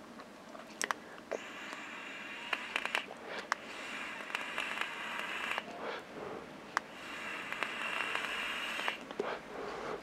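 Soft, airy hiss of a tight mouth-to-lung draw on a Joyetech Exceed Edge pod vape, lasting about four seconds, with a few faint clicks. A second, shorter breathy hiss follows about seven and a half seconds in.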